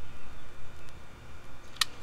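A single short, sharp click near the end, over an uneven low rumble, as a utility lighter is drawn back from the grill grate.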